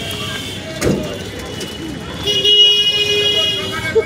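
A vehicle horn sounds one steady, unbroken note for about a second and a half past the middle, over the voices and traffic of a busy street market. A single sharp knock comes about a second in.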